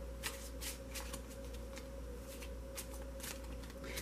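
Tarot deck being shuffled by hand: faint, irregular card flicks and slides, over a low steady hum.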